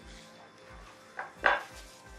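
A metal spoon knocks sharply once against a glass mixing bowl about one and a half seconds in, just after a lighter tap, as flour is tipped in.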